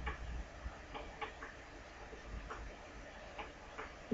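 Faint, irregular light taps and clicks of a pen tip on a writing surface as words are handwritten, over a low steady background hum.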